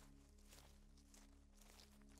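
Faint footsteps on a dirt trail through dry grass, about two steps a second, over soft sustained background music.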